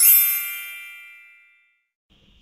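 A single bright chime sound effect marking a slide transition: struck once, a cluster of high ringing tones that fades away over about a second and a half.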